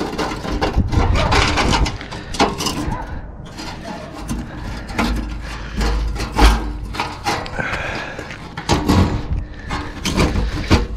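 Irregular knocks, clatters and scrapes of handling a chimney cover on a brick chimney crown, with a low rumble of wind on the microphone about halfway through.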